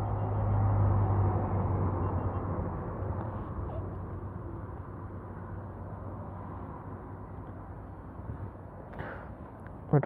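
A low, steady engine rumble, loudest in the first couple of seconds and fading gradually over the rest.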